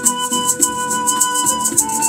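Panpipe holding one long note that steps down slightly near the end, with a maraca shaken in a quick, even rhythm, over a backing of plucked strings.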